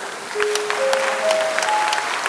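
Audience applauding with scattered claps. Over the clapping, four steady tones follow one another, each higher in pitch than the last.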